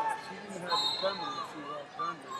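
Overlapping voices of people talking in a large, echoing sports hall, with a brief high-pitched tone near the middle.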